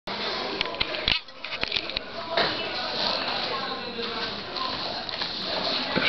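A few sharp knocks and rustles from a camera being handled and set in place during the first two seconds, then indistinct voices in a small room.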